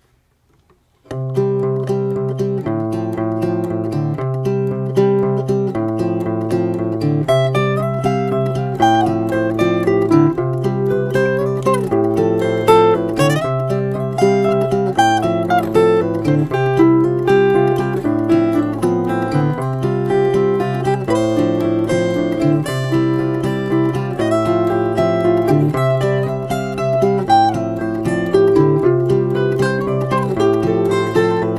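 Instrumental song intro led by acoustic guitar, starting about a second in with a steady repeating chord pattern; higher plucked melody notes join over it after several seconds. No singing.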